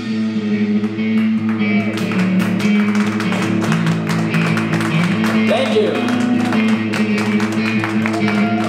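Electric bass and guitar ringing through amplifiers between songs, with held low notes that shift pitch, a bass note sliding upward about five seconds in, and many short taps and clicks. Voices sound underneath.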